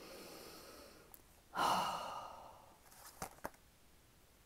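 A woman smelling something up close: a long breath in through the nose, then, about a second and a half in, a louder sighing breath out. Two light clicks follow near the end.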